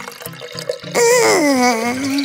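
Watermelon juice running from a keg tap into a glass, over soft background music. About a second in, a voice gives a long, loud 'ooh' that falls in pitch.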